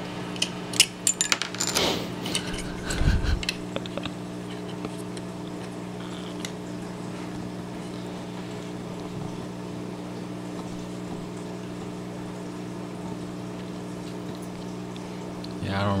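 Carbon-fibre quadcopter frame plates and nylon standoffs clicking and knocking against each other as they are handled and fitted together. The taps come in a short cluster in the first few seconds. Under it and afterwards there is only a steady low hum.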